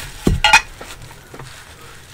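An ink bottle set down on an ornate metal tray: a dull knock, then a short ringing clink, followed by a few faint taps.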